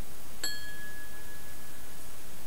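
A single bright ding about half a second in: a struck bell-like tone that rings on and fades over about a second and a half, over a steady hiss.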